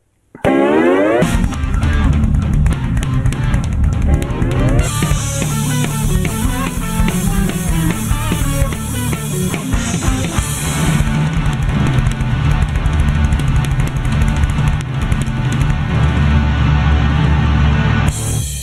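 Acoustic drum kit with Sabian cymbals played in a rock groove over rock backing music. It starts after a brief silence with a short rising sweep, and the cymbal wash is heaviest for several seconds in the middle.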